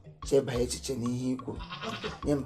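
Speech only: a person speaking in conversational dialogue, with no other distinct sound.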